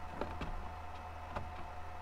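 Faint steady low hum with a faint steady tone over it and a few light clicks.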